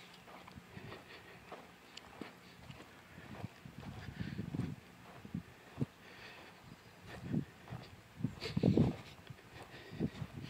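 Faint footsteps of a person walking across grass, heard as irregular soft low thumps, the firmest ones about halfway through and near the end.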